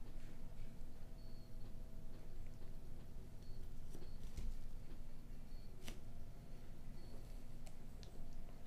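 Quiet room tone with a steady low hum, broken by a few soft clicks as the earbuds are handled and adjusted in the ears; the sharpest click comes about six seconds in.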